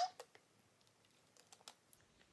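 A few faint, sharp clicks spread over about two seconds, a cluster of them late on: a plastic water bottle being handled in the hands.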